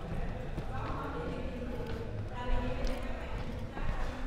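Faint talking of several people some distance away, over a steady low rumble of a large hall, with a few light knocks.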